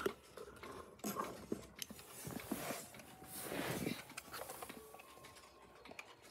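Faint handling sounds: soft rustling and a few light clicks and taps as clocks are touched and moved.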